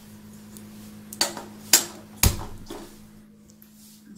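Gas stove being switched on: three sharp clicks about half a second apart, the last with a low thump.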